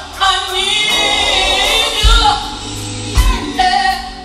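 Live gospel music: three women singing in harmony over a band, with bass and drum hits thumping about two seconds in and again just after three seconds.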